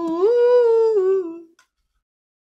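A person humming a short melodic phrase: one held note that glides up, holds, and slides back down, ending about a second and a half in.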